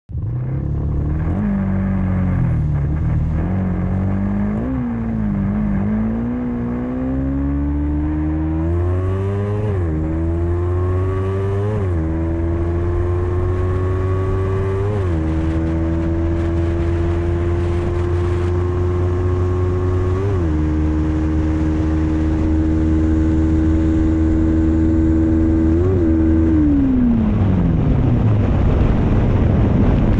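Yamaha Exciter 150 single-cylinder four-stroke motorcycle engine, fitted with a flat-top piston, heard from the rider's seat. It accelerates hard up through the gears, its pitch rising with a brief dip at each shift, then holds steady at high speed with a couple of short throttle lifts. It winds down as the bike slows near the end.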